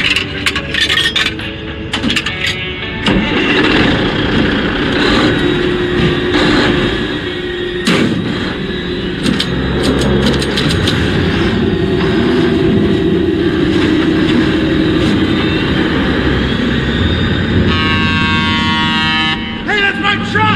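Film soundtrack mix of truck-stop sound: a steady truck-engine rumble with scattered clicks over the first few seconds and a sharp knock about eight seconds in, under background music. A set of steady tones comes in near the end.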